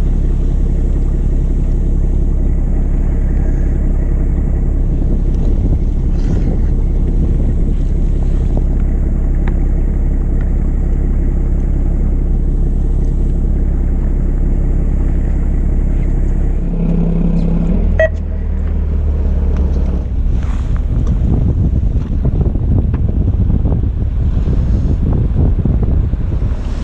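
Fishing boat's engine running with a steady low drone; about seventeen seconds in, the engine note shifts.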